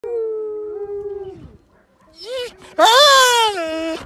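Wolf and dog howling one after another. A long steady howl, a short pause, then a brief rising call and a louder howl that swoops up and slowly falls in pitch, stopping near the end.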